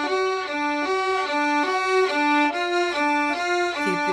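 Violin and viola bowing together in unison on the D string, a finger-tapping exercise: a finger drops and lifts so the pitch alternates between the open string and a stopped note above it, about two notes a second.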